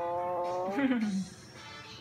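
A young child's voice holding one long sung note that breaks off about 0.7 seconds in into a short falling laugh, followed by a quieter pause.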